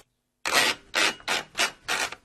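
A run of about six short rasping, rubbing strokes, roughly a third of a second apart, growing fainter and dying away.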